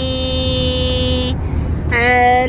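A woman singing a long held note without words, which breaks off about two-thirds of the way in before a new note starts near the end, over the steady low hum of a car cabin on the move.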